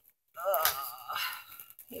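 A woman's strained groan, "ugh", with a wavering pitch, as she stretches to reach something, trailing off before she starts to speak.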